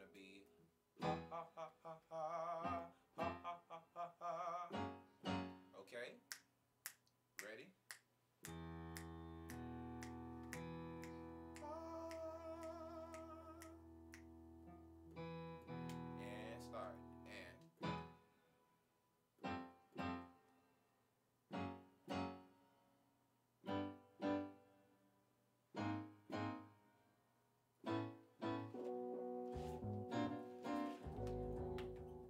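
A man singing a staccato "ha" vocal warm-up over a Yamaha Motif XS8 keyboard playing piano chords. He sings short, separate notes. A long held chord comes about a third of the way in, with a sustained sung note that wavers in vibrato. The rest is short notes about one a second.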